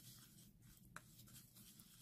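Faint scraping of a spoon stirring a thick paste of ground coffee, honey and olive oil in a ceramic bowl, with one sharp click about a second in.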